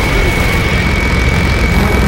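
Movie-trailer sound design: a loud, steady rumbling drone with a thin high whine held above it, set off by a sharp hit just before. The whine cuts off near the end.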